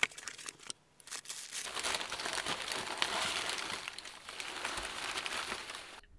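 A box cutter slitting packing tape on a cardboard box, a few short sharp scrapes, then a long spell of crinkling as bubble wrap and packing paper are pulled out of the box.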